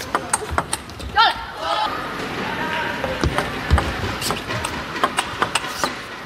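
Table tennis ball clicking sharply and repeatedly against bats and table. A short shout comes about a second in, followed by a steady wash of arena crowd noise.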